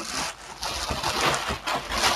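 Plastic bubble wrap being handled and pulled, an uneven rustling and crinkling with a few sharp crackles.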